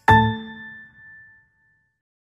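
Last note of a short logo jingle: a single struck note a moment in, ringing and fading away over about a second and a half.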